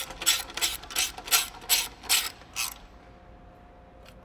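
Hand ratchet wrench clicking as a bolt is run down, about eight quick strokes a couple of times a second, stopping about two and a half seconds in.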